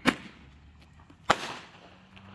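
Roman candle firing: two sharp bangs about a second and a quarter apart, each trailing off briefly.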